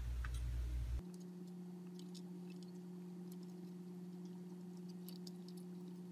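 Faint small clicks and ticks of fine wire leads being handled and twisted together by hand. A strong low rumble cuts off abruptly about a second in, leaving a steady low electrical hum.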